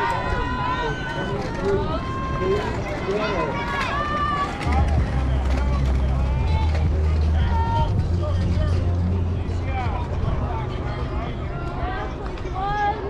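Several high voices calling out and cheering over each other, with crowd babble, at a softball game. A low rumble comes in about five seconds in and fades about six seconds later.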